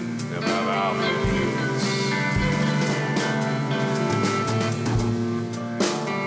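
Live rock band playing an instrumental passage: electric guitars ringing out over a drum kit, with cymbal hits and scattered bass-drum thumps.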